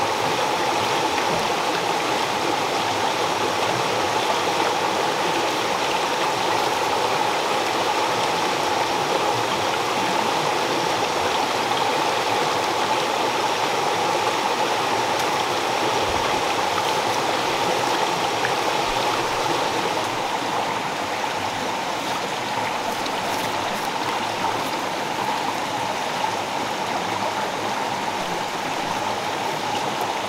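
Steady rushing of a forest stream, an even flow without breaks.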